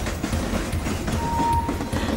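Freight train running along the track: a steady rolling noise, with a short steady tone that starts a little past halfway and stops just before the end.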